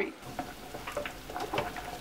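Pork ribs sizzling gently in a pot with their sugar, vinegar and soy sauce, with a few light scrapes and taps of a spatula stirring them.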